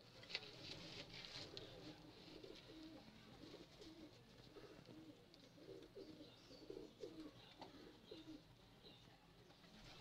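Domestic pigeon cooing: a faint run of repeated low, rolling coos, with a few sharp clicks in the first second or so.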